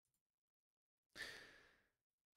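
Near silence, then a man's short, soft sighing exhale about a second in that fades away.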